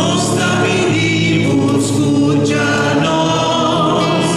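A man and a woman singing a litany hymn together to acoustic guitar accompaniment.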